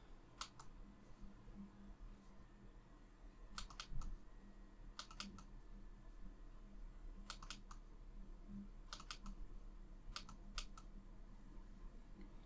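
Faint computer mouse clicks, mostly in quick double-clicks, in about six clusters spread a second or two apart, as folders are opened one after another in a file dialog.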